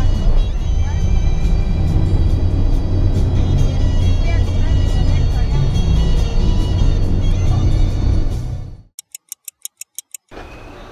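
Music and voices inside a colectivo minibus over its low, steady engine rumble. Near the end the sound cuts off abruptly and a stopwatch ticks quickly, about seven ticks a second.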